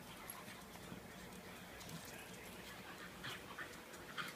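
Two small dogs play-wrestling, making faint dog noises, with a cluster of sharper sounds about three seconds in.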